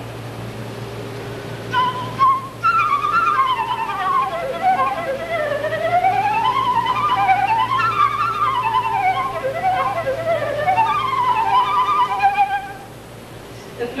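Concert flute playing a fast passage of rapid runs, the melody sweeping up and down through scales. It starts about two seconds in and stops shortly before the end, over a steady low electrical hum.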